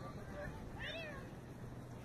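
A single short, high-pitched call from a distant voice about a second in, its pitch rising and falling, over faint outdoor background noise.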